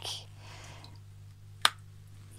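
A single sharp click about one and a half seconds in, from a hand working at a spread of tarot cards on a table, over a low steady hum.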